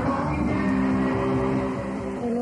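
Rock music with electric guitar chords ringing out and held steady.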